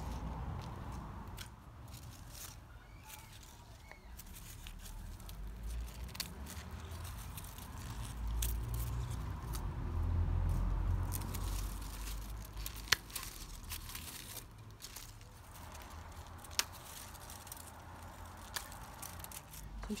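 Wilted clematis stems and leaves crackling and rustling as they are handled and pulled away from a trellis, with scattered small clicks and two sharper ones, the loudest about 13 seconds in. A low rumble swells and fades underneath, loudest about halfway through.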